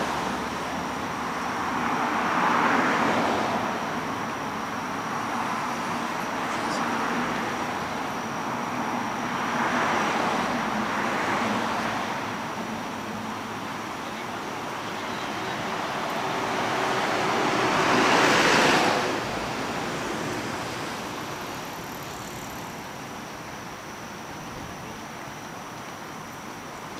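City street traffic: cars passing one after another on the avenue, their tyre and engine noise swelling and fading, with the loudest pass a little past the middle.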